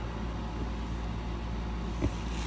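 Steady low rumble from a small microphone lodged in the ear canal, picking up the body's own internal noise.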